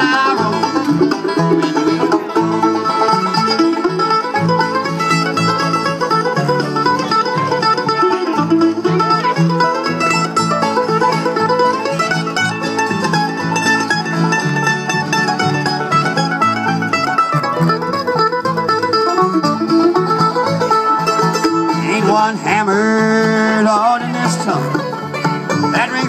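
Live bluegrass band of banjo, fiddle, mandolin, acoustic guitar and upright bass playing an instrumental break between sung verses.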